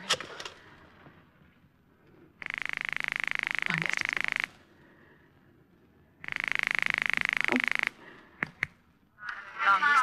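Telephone ringing signal heard through the receiver: two buzzing rings, each about two seconds long, with a pause of about two seconds between them. A couple of faint clicks follow as the line is answered.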